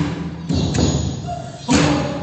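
Taiwanese aboriginal music played live: a few heavy struck percussion thuds with a ringing pitched tone after them, the loudest strike near the end.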